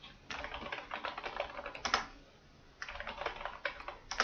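Computer keyboard being typed on in two quick bursts of keystrokes, the first about two seconds long and the second about a second, with a slightly louder keystroke at the end of the first burst.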